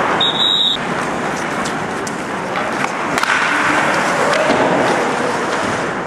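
Ice hockey practice on the ice: skate blades scraping and carving, with sharp clacks of sticks and puck, and a brief high steady tone like a whistle blast just after the start. Players' voices call out faintly over the skating.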